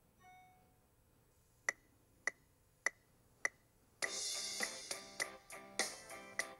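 A short soft chime, then four evenly spaced clicks about half a second apart as a count-in. After that, a basic eight-beat drum groove on an electronic drum kit, opening with a cymbal crash, over a pitched backing track from the app's lesson video.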